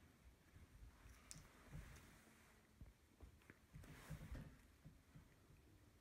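Near silence, with a few faint clicks and handling noises from a small plastic paint bottle being opened and squeezed.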